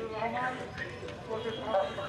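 Indistinct speech played through a phone's speaker from a video call.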